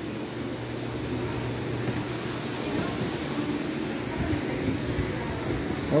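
Refrigerator compressor running with a steady low hum while the system is on the gauges for charging, with a few soft knocks about four to five seconds in.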